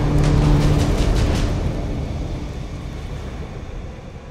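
Cinematic logo sound effect: a deep rumble and low drone with sharp crackles early on, fading steadily away.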